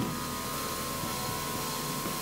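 Room tone in a pause between words: a steady hiss and hum with a faint, steady high tone running through it.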